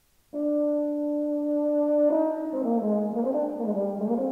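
Euphonium entering after a pause with a long held note, then breaking into a quick run of moving notes about two seconds in.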